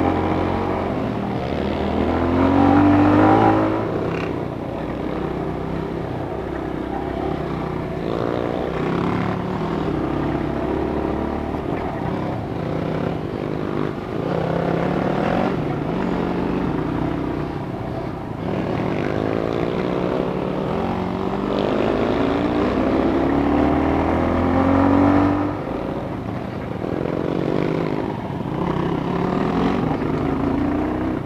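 Dirt bike engine running under load on the trail, its revs climbing and dropping again and again with the throttle. It is loudest a few seconds in and again a few seconds before the end.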